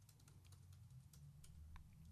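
Faint typing on a computer keyboard: a quick run of soft key clicks as a command is typed in.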